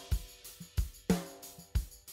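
Recorded drum-kit track playing on its own: kick and snare hits in a steady beat with cymbals.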